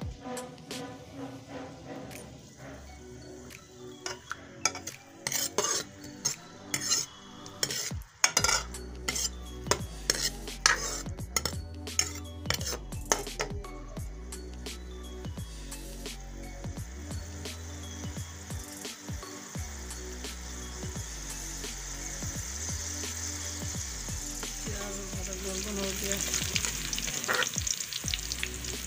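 Sliced onions frying in hot oil in a steel pot, stirred and scraped with a metal ladle. Sharp clinks and scrapes of the ladle on the pot come in the first half, then a steady sizzle grows louder as the onions start to brown.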